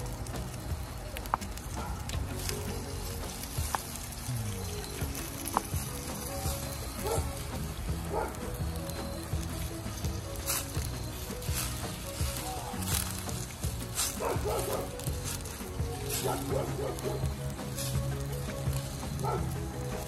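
Fish, onions and carrots sizzling in a stainless steel skillet, with occasional clicks of a metal fork against the pan, under steady background music.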